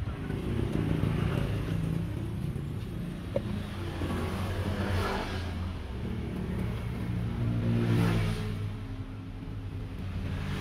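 Road traffic: motor vehicle engines running and passing close by, the rumble swelling a few times as vehicles go past, with a single small click about a third of the way in.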